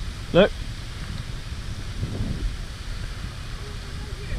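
Wind rumbling on an outdoor camera microphone, a low, uneven rumble, with one short spoken word near the start.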